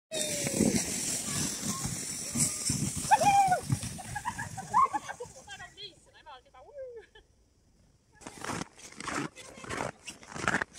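Voices calling and shouting with rising and falling pitch over a steady high hiss, fading out after about five seconds. Near the end come about four short crunches, like footsteps in snow.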